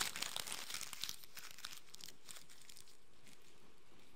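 A sheet of paper crumpled into a ball by hand: a dense run of crackles that thins out after about two seconds and stops.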